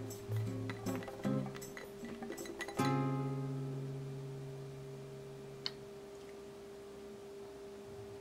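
Background music on plucked acoustic guitar: a new chord strikes about three seconds in and rings out, fading slowly.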